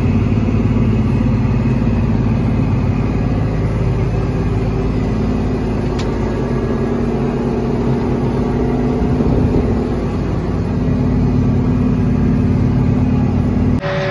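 John Deere tractor's diesel engine running under heavy load, pulling a field cultivator through tillage in a lower gear uphill; a steady, loud drone.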